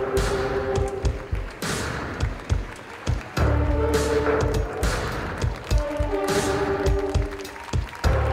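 Fashion-show runway music, an instrumental stretch with no singing: a driving drum beat, a heavy bass line that drops out and comes back, and long held chords.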